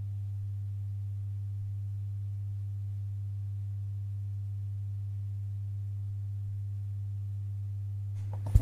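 Steady low electrical hum from the amplified sound system, one unchanging low tone.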